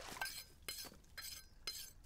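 Faint, scattered clinks of cups or crockery knocking together, about half a dozen light strikes over two seconds, each ringing briefly.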